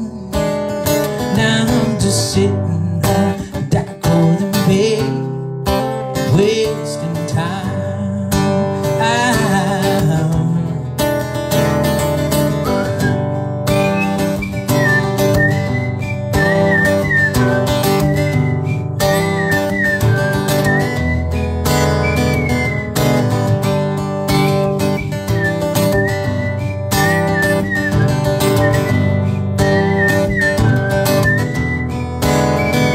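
Acoustic guitar strummed steadily with a melody over it. From about halfway, a high whistled tune runs above the chords.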